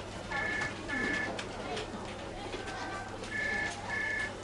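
Electronic desk telephone ringing: two double rings, each a pair of short two-tone beeps, about three seconds apart.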